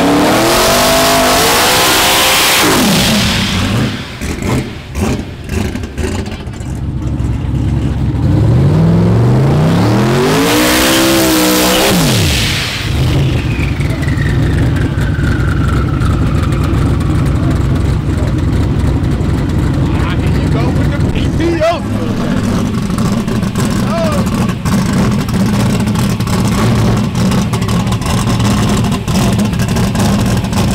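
Drag-race car engines revving hard twice, each rev climbing in pitch for a few seconds under heavy noise, the second cutting off suddenly about 12 seconds in. After it a falling whine trails away, and engines idle steadily for the rest of the stretch with crowd voices around.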